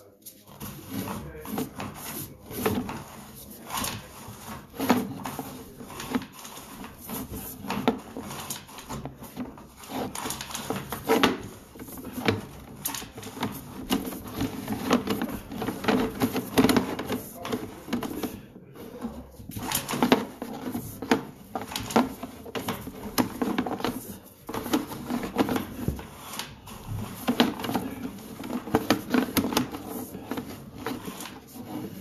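Sewer inspection camera's push cable being fed down a drain line: irregular knocking and clicking as the cable and camera head are pushed and handled.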